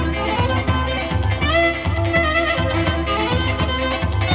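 Live Pontic folk dance music from a small band of clarinet, keyboards and daouli bass drum: an instrumental melody over a steady drum beat.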